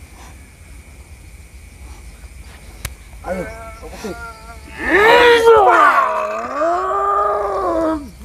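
A man's long, strained battle yell lasting about three seconds, loud, its pitch sagging in the middle and climbing again.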